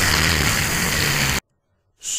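A loud, steady burst of rushing noise that holds for about a second and a half, then cuts off abruptly into silence.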